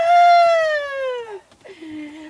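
A person's long, drawn-out whoop of delight, one call that rises quickly and then slides slowly down in pitch over about a second and a half, followed near the end by a short, lower voiced sound.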